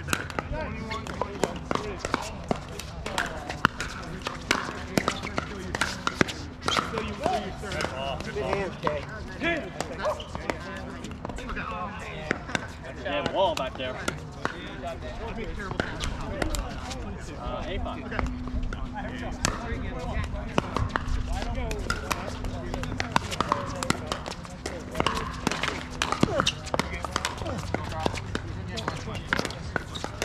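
Pickleball paddles striking the hard plastic ball: sharp pops that come irregularly throughout, from this court and the courts around it. Voices from players and onlookers run underneath.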